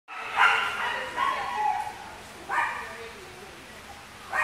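A dog barking and whining in three short bouts, each starting sharply and trailing off lower in pitch.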